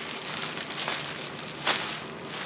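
Clear plastic air-cushion packaging crinkling and crackling as it is handled, with one sharper crackle just before the end.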